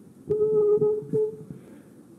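Gooseneck microphone being handled and repositioned at a lectern, heard through the sound system: several knocks from the handling and a steady ringing tone that lasts about a second, with a brief break in it.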